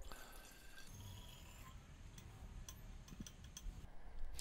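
Faint trickle of hydrobromic acid poured from a glass beaker into a glass bottle, followed by a few small drips and light ticks.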